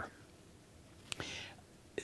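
A short pause in speech: near silence, then a mouth click about a second in and a brief breath in through the mouth.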